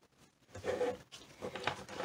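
Light rustling and a few faint clicks from a plastic egg rack and cardboard egg flats being handled on a table.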